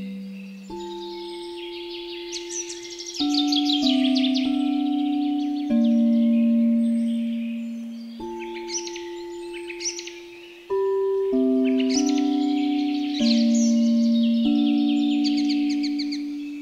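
Tibetan singing bowls struck one after another, about ten strikes at different pitches, each tone ringing out and slowly fading. Behind them, songbirds chirp in quick, high trills.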